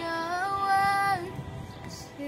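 A young girl singing a held note that steps up in pitch and breaks off just after a second in, with musical accompaniment continuing beneath.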